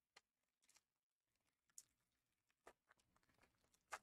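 Near silence with a few faint clicks and rustles of trading cards and a foil card pack being handled, the strongest just before the end.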